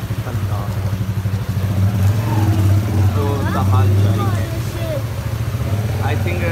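Small motorcycle engine running steadily with a low drone, a little louder through the middle, with voices talking over it.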